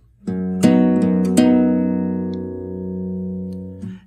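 Nylon-string classical guitar, capoed at the second fret, plucked in an A-chord shape. There are three plucks in the first second and a half; the notes ring and fade and are damped just before the end. This is the bass-change element of the picking pattern.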